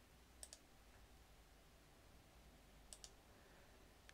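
Near silence broken by two faint double clicks at a computer, one about half a second in and another about three seconds in.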